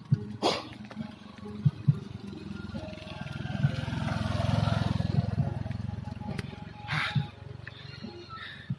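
Small motorcycle engine passing close by, its sound rising to a peak about halfway through and then fading, with a few sharp clicks over it.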